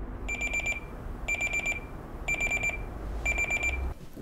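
Digital alarm clock going off: four bursts of rapid, high-pitched beeps, about one burst a second.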